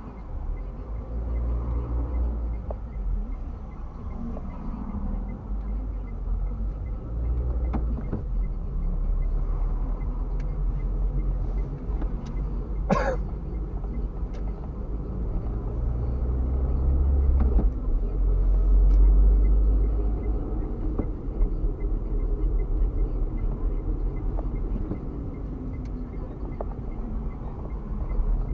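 Car engine and road noise heard from inside the cabin: a steady low rumble that swells louder in the second half as the car gets moving after a green light. One brief sharp sound cuts in about halfway through.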